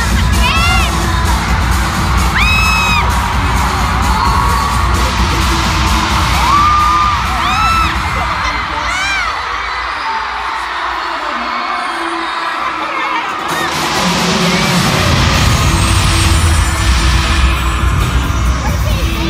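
Loud pop dance music from an arena PA, with the crowd screaming and whooping over a constant roar. The bass drops out for a few seconds around the middle, leaving mostly the crowd's high screams, then the heavy beat comes back.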